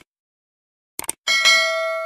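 Subscribe-button animation sound effects: a short click about a second in, then a bright notification-bell ding that rings on and slowly fades.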